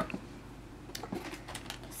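Faint handling noise: light rustles and a few small clicks as camera accessories packed in plastic bags are taken out of a cardboard box.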